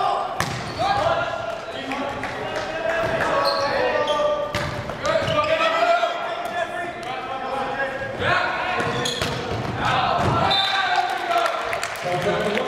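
Volleyball rally in a gym: several sharp smacks of the ball being hit, under players and spectators shouting and calling throughout, echoing in the hall.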